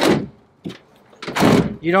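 Pickup truck tailgate of a 2020 Ford F-250 Super Duty being closed, shutting with a single heavy thunk about a second and a half in.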